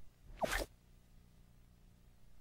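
A cartoon logo sound effect played backwards: one short swish with a falling squeak about half a second in, over a low steady hum.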